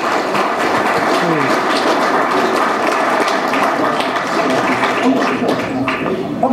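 Audience applauding steadily, a dense sound of many hands clapping.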